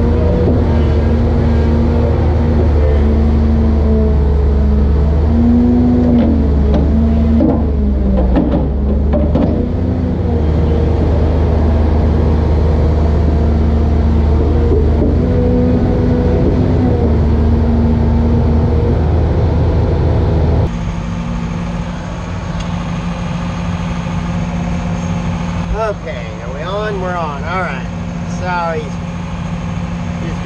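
Diesel engine of a tracked log loader running steadily, its note shifting a little. About two-thirds in the sound cuts to a quieter engine hum, with wavering whines rising and falling near the end.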